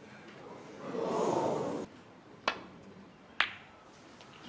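A loud, breath-like rush of noise lasting about a second that cuts off sharply, then two sharp clicks about a second apart, typical of snooker balls knocking together on the table.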